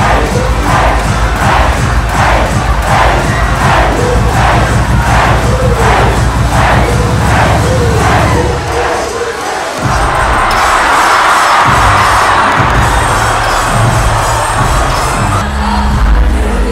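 Large crowd cheering and shouting over loud, bass-heavy dance music, the noise pulsing about twice a second. The bass cuts out for about a second around eight and a half seconds in, then comes back as the crowd's cheering grows louder.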